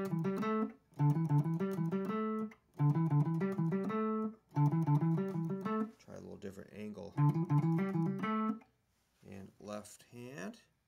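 Electric guitar with a humbucker pickup played with alternate down-up picking: the opening note group of an E minor pentatonic sequenced climbing lick, repeated about five times with short pauses between. A few scattered notes come near the end.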